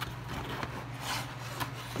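Cardboard rubbing and scraping as a ceramic dinner plate is slid out of its snug cardboard box, with a brighter swish about a second in.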